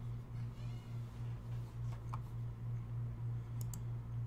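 A steady low hum that pulses about five times a second, with two quick clicks close together near the end.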